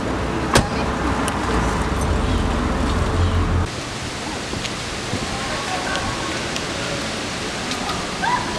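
Outdoor street ambience: a low rumble with a steady hum and a single sharp click early. A few seconds in it changes abruptly to an even hiss of street noise with faint voices in the background.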